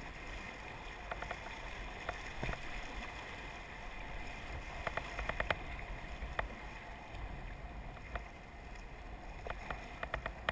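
Rushing, churning river water around a kayak running a riffle, with splashing from the paddle strokes. Scattered sharp clicks and knocks come in small clusters, most of them around the middle and near the end.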